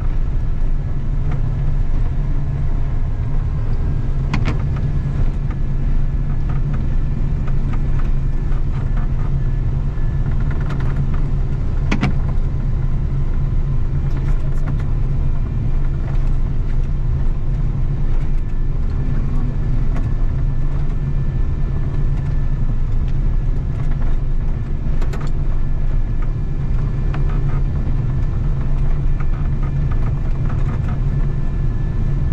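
Diesel engine of a snow-plowing machine with a front plow blade running steadily, a low, even drone, with a few sharp knocks about four and twelve seconds in.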